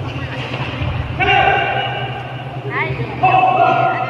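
Two long, high-pitched shouts, one about a second in and one near the end, with a brief rising yell between them, over a steady low hum in a large hall.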